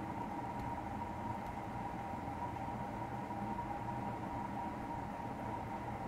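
Steady background hum and hiss with a faint, even high tone running through it, unchanging throughout.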